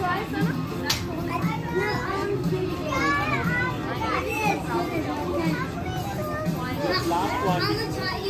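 Children's voices calling and shouting over one another, high-pitched, with music playing underneath.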